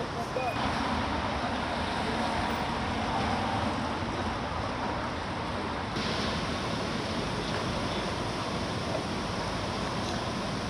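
City street ambience: a steady hum of road traffic with indistinct voices, the sound changing abruptly about six seconds in.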